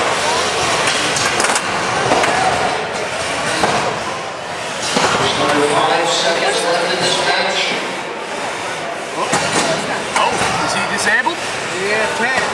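People talking in a noisy arena over the clatter of small combat robots driving and knocking into each other on the floor.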